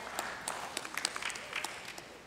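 A church congregation applauding: a spread of hand claps that thins out and fades near the end.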